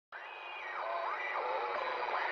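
Radio-like static, cut off above and below as if through a radio, with tones that swoop down and back up. It starts suddenly just after the opening silence.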